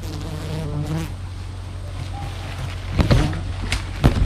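A flying insect buzzes close to the microphone for about a second, over a steady low hum. Leaves and twigs then rustle and crackle loudly about three seconds in and again at the end as someone pushes through dense undergrowth.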